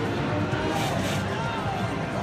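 Casino floor noise: steady background chatter under electronic slot machine tones, with a soft gliding tone in the second half.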